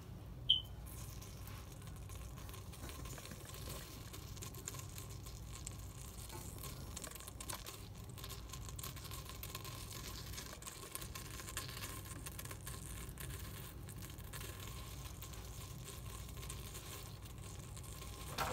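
A single short, high electronic beep about half a second in, typical of an electric pressure cooker's control panel responding to a button press, followed by a faint steady low hum.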